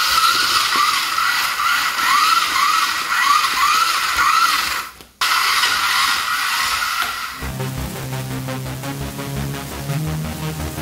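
Electronic background music. A hissy opening with repeating swooping tones breaks off briefly at about five seconds, then gives way at about seven and a half seconds to a section with a bass line and a steady beat.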